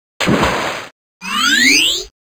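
Two short science-fiction sound effects, one after the other: a noisy burst lasting about two thirds of a second, then, after a brief silence, a sweep of several tones rising together in pitch.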